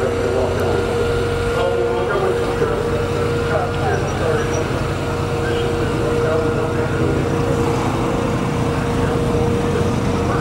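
An engine running steadily in the paddock: a constant low rumble with a held hum that does not change pitch, under indistinct background voices.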